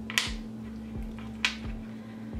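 Two short wooden clicks as small Jenga blocks are set down on the sign, about a quarter second in and about a second and a half in, over soft background guitar music with a steady low beat.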